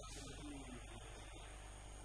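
Steady low electrical mains hum under quiet room tone.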